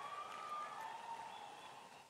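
Faint cheering and applause from a large crowd, dying away.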